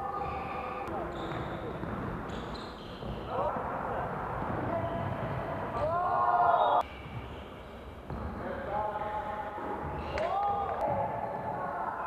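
Live sound of an indoor basketball game: a ball bouncing on the court, with players' voices calling out. The sound drops off abruptly about seven seconds in, at a cut to another game, then carries on much the same.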